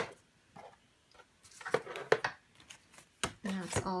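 Paper envelopes and a stationery pack handled by hand in a wooden desk drawer: a sharp tap at the very start, then a few soft rustles and light taps.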